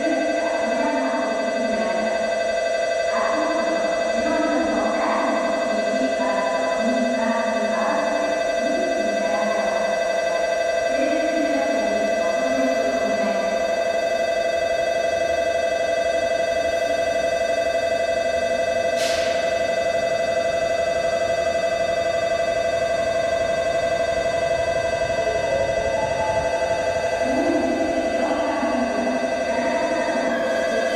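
Platform approach bell (接近ベル) at JR Kanazawa station, an electronic bell tone ringing steadily and without a break to warn that a train is arriving. A short high hiss sounds about two-thirds of the way through.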